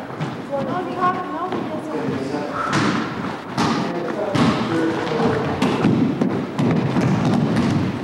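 A basketball bouncing on a hardwood gym floor during a pickup game: a string of irregular thuds starting about two and a half seconds in, under the indistinct voices of the players.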